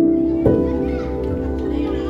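Background music with sustained notes, a new note coming in about half a second in, over the chatter of children's voices.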